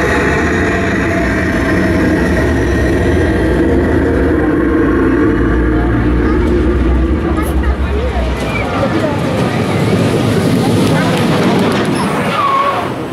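Wooden roller coaster train running along its track: a loud, steady low rumble that thins out after about eight seconds, when riders' voices come through.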